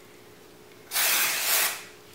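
Aerosol can of Sally Hansen Airbrush Legs spraying once onto the skin: a single hiss of nearly a second, starting about a second in.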